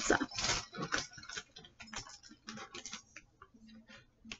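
Small counters being set down one by one on a tabletop: a string of light, irregular clicks and taps that grow sparser and fainter toward the end.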